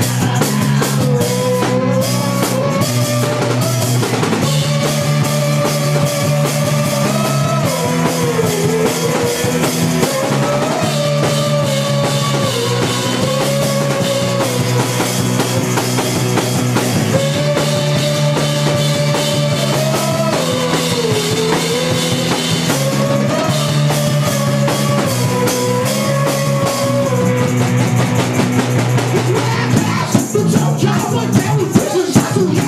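Live rock band playing: a drum kit keeps a steady beat under electric guitar chords, with a held, wavering melody line on top.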